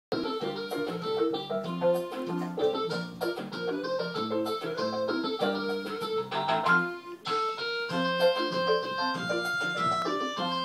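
Electronic keyboard playing a song: a melody over chords and a moving bass line, with a steady beat.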